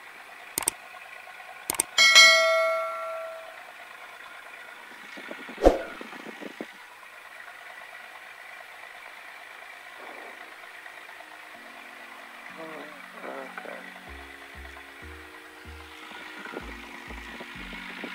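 Subscribe-button sound effect: two mouse clicks, then a bright bell-like ding about two seconds in that rings out for over a second. Steady low cabin intercom hiss follows, with a sharp knock near six seconds. Electronic background music with a bass line fades in about twelve seconds in.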